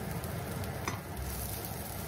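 Chopped onion sizzling gently in olive oil in a stainless steel frying pan, with a wooden spoon stirring through it; one light tap about a second in.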